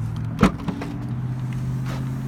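Rear liftgate latch of a 2019 Buick Encore releasing with a sharp click about half a second in, followed by a few lighter clicks as the gate is lifted, over a steady low hum.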